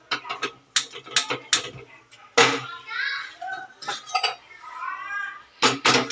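Metal cookware clanking: a run of sharp knocks in the first couple of seconds and two more near the end, as an aluminium kadhai is handled on a gas stove.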